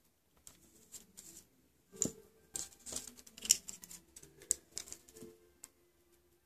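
Metal tweezers clicking and scraping inside a small plastic jar of tiny nail-art pieces as they pick one out: a run of small, irregular clicks and rattles, loudest about two seconds in and again around three and a half seconds.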